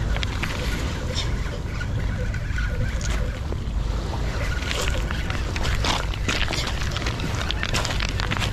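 Wind on the microphone: a steady low rumble, with scattered sharp clicks and knocks, more of them in the second half.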